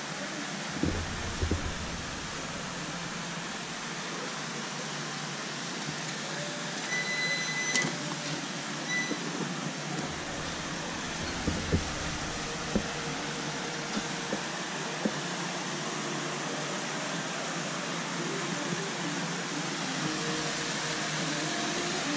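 Steady whooshing, machine-like background noise, with a few light knocks scattered through it.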